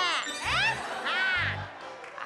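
Sitcom background music: ringing, chime-like tones that sweep up and down in pitch over a low beat about once a second.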